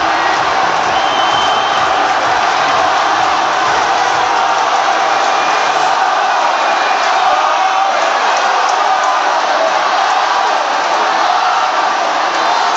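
Large stadium crowd cheering and shouting in a steady, loud din of many voices.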